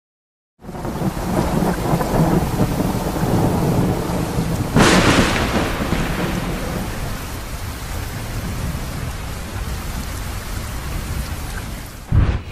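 Thunderstorm sound effect under a studio logo intro: steady rain with low rumbling thunder, rising out of silence just after the start. A sharp thunderclap comes about five seconds in, and the storm then slowly fades.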